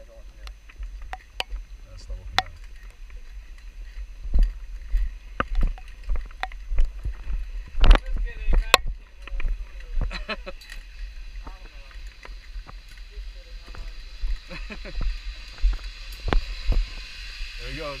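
Wind rumbling on the microphone with scattered knocks and clicks. In the last few seconds a high whir builds as a zipline trolley runs down the steel cable carrying a rider.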